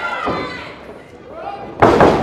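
Voices shouting, fading away, then near the end one loud, sharp smack of a strike landing on a wrestler's body, with a smaller hit about a quarter second in.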